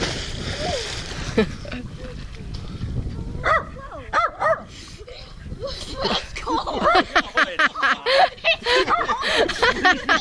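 A person jumping off a dock into a lake: a splash at the very start that settles within about a second. From about the middle on, a run of short excited cries and yelps grows louder and busier toward the end.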